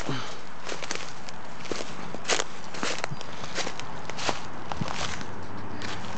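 Footsteps through dry leaf litter and dead brush: irregular crackling steps, with dry stems brushing and snapping against the walker.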